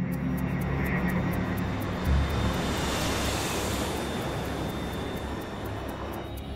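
Jet engines of an airliner passing by, a rushing noise that swells to a peak about halfway through and then eases off, with a low boom about two seconds in. A droning music bed runs underneath.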